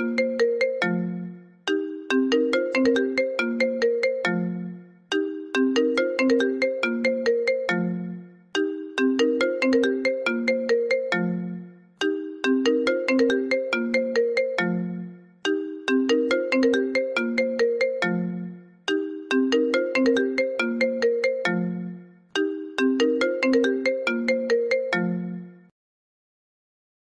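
iPhone ringtone: a short melodic phrase of quick notes, each fading out, repeating about every three and a half seconds and stopping near the end.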